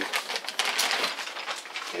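Background room noise in a small room: a steady hiss with many light, scattered clicks and clatter.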